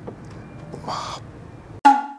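A single loud crow caw, a short one-shot sound effect, comes near the end right after the room sound is cut off, and it fades into silence. A brief hissing noise is heard about a second in.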